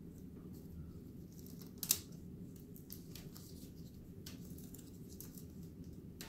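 Light handling sounds of thin wooden window-frame strips and masking tape on a work table: a sharp click about two seconds in and a few fainter ticks, over a low steady room hum.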